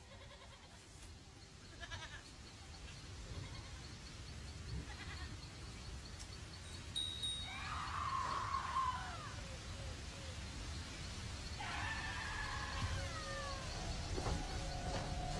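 Goats bleating: two drawn-out, wavering bleats, the first about seven and a half seconds in and the second about twelve seconds in, over a faint low rumble.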